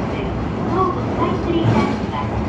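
Toei Asakusa Line 5500-series subway train running through a tunnel, heard from the cab: a steady, loud running rumble.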